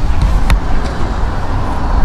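Steady low outdoor rumble with a single sharp click about half a second in.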